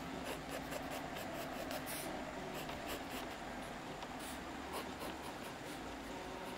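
Pencil scratching on drawing paper in short, quick shading strokes, several a second, with one longer stroke about two seconds in.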